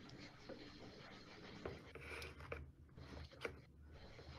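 Near silence with a few faint small clicks and scrapes from the BrailleSense Polaris's flat plastic battery being handled over its battery bay.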